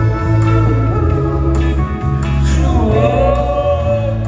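Live concert performance: a male singer singing into a handheld microphone, backed by a live band with guitar and a steady bass line.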